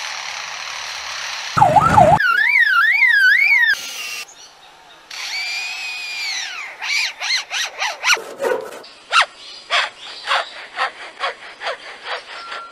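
A lyrebird mimicking a string of mechanical and electronic sounds: a hissing whirr, then a fast warbling alarm-like tone, an arched whistle, and a long run of short sharp notes, about two a second, through the second half.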